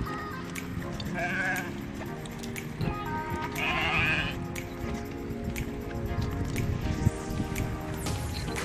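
Sheep bleating, two wavering calls about a second in and around four seconds in, over steady background music.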